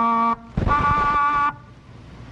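Magnus Chord Organ, an electric reed organ, sounding two held reedy tones as its keys are pressed. The first tone stops just after the start, and the second begins about half a second in and lasts about a second.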